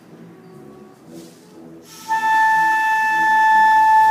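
Concert flute sounding one long, steady sustained note, a tuning note held for an intonation check. It starts about two seconds in.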